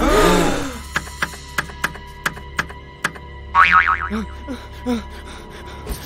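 Cartoon soundtrack: music with sound effects. It opens with a loud wobbling sound effect over a low steady hum, followed by a run of short light ticks, a brief wavering vocal sound just past the middle, and a few low blips.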